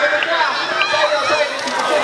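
A crowd of spectators shouting and cheering, many voices at once, as BMX riders race to the finish line.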